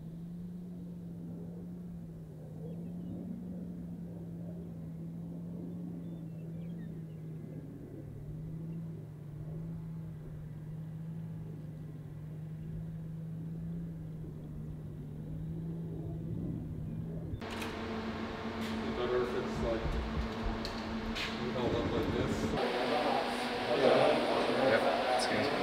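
A steady, slightly wavering low engine hum from distant military vehicles driving in a column. About 17 seconds in it cuts off suddenly, giving way to a louder room sound with a steady fan-like hum, scattered clicks and voices near the end.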